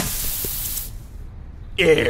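Cartoon 'poof' sound effect for a puff of smoke: a loud, hissing spray-like burst lasting just under a second. Near the end comes a short voice-like sound with a gliding pitch.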